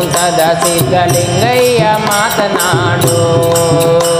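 Kannada devotional song (bhakti geete) performed live: a man singing an ornamented melody to a steady tabla beat, holding one long note near the end.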